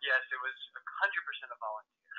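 Speech over a telephone line: a thin, narrow-sounding voice, quieter than the main speaker, talking in short phrases that stop a little before the end.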